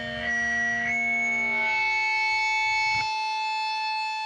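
Distorted electric guitar left ringing out at the end of a crustgrind song, with a high whistling feedback tone that steps up in pitch twice within the first second. The low end cuts off about three seconds in, leaving the high ringing tones.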